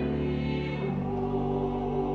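A small choir singing sustained chords, moving to a new chord about a second in.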